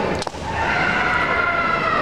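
Kendo competitor's long, high-pitched kiai shout, held for over a second and falling away at the end, just after a sharp clack of bamboo shinai near the start.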